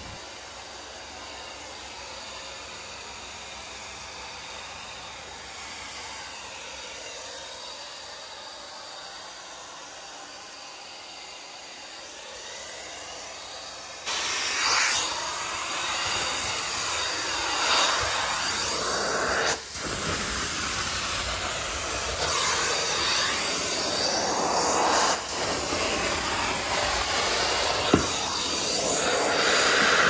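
Carpet extraction stair tool: a steady faint hiss of the vacuum for the first half, then about halfway through a sudden, much louder rushing hiss of suction and spray as the tool works the carpet, its tone sweeping as it moves, with two brief dips.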